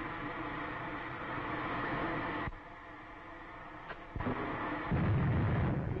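Old film soundtrack sound effects of a space dogfight: a steady rocket-ship engine noise that cuts off suddenly about two and a half seconds in, then near the end a loud, low, rumbling explosion as the pursuing ship is hit.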